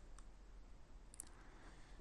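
Near silence with a few faint computer mouse clicks: one shortly after the start and two close together just past a second in.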